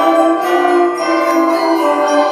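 High school concert band playing a fanfare: brass and winds hold sustained chords that shift every half second or so.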